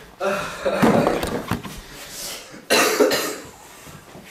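A man coughing in two bouts, the first starting about a quarter second in, the second sharper, near three seconds.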